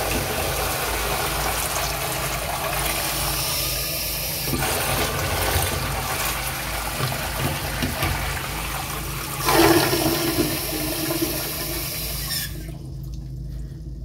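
Toilet flushing: water rushing and swirling in the bowl, with a louder surge about ten seconds in. The rush cuts off sharply near the end, leaving only a fainter low sound.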